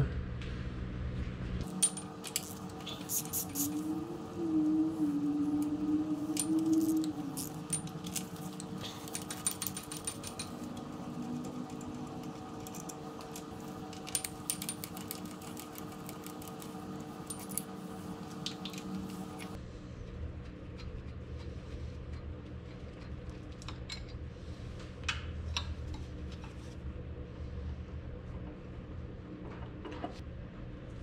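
Scattered metallic clinks and taps of hand tools and steel transmission parts as a tractor transmission is taken apart. A steady hum runs underneath and stops about two-thirds of the way in.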